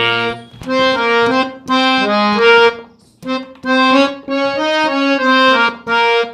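Harmonium played in short phrases of quick, detached reed notes with brief breaks between them. It is picking out a guitar tune in a jumping, jhala-style touch.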